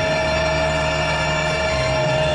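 Electronic organ music: a sustained chord with one long held note over it, the bass moving to a new note about one and a half seconds in.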